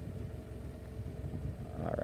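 A steady low mechanical hum with an even, engine-like pitch. A man's voice begins right at the end.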